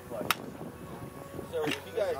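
Manual clay-target thrower being handled and recocked: a sharp click about a third of a second in and a louder metallic click near the end, with faint voices in the background. No shotgun is fired.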